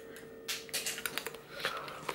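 Crunching and chewing hard home-dehydrated fruit chips: a run of irregular crisp cracks starting about half a second in.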